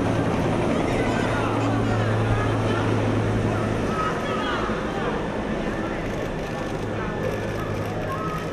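Busy street noise: a vehicle engine running with a steady low hum, under indistinct voices of a crowd.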